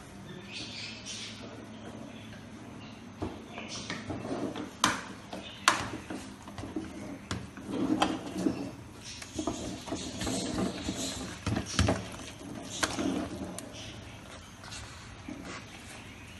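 A ladle stirring thick rice in a large aluminium pot: scraping through the rice, with sharp knocks and clicks against the pot several times.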